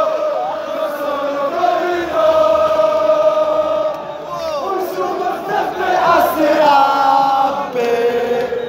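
Raja Casablanca supporters in the stands chanting a song loudly in unison, with long notes held together by many voices.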